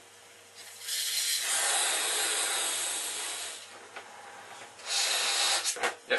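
A man blowing up a rubber balloon by mouth: one long breath of air rushing into it for about three seconds, then a shorter puff near the end.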